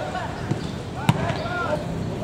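A football being kicked on a grass pitch: two sharp thuds about half a second apart, the second louder, with players' shouts around them.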